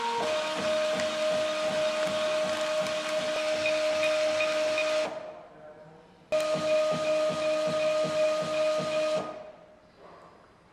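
Argox iX4-350 thermal-transfer label printer running as it prints and feeds labels: a steady whine over a hiss. It runs for about five seconds, stops briefly, then runs again for about three seconds.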